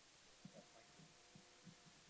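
Near silence: room tone with a series of faint, soft low thuds and a faint steady hum that comes in about a quarter of the way through.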